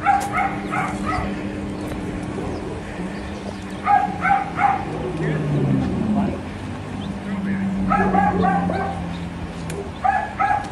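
A dog barking in quick runs of three or four barks, the runs coming about four seconds apart, over a low steady hum.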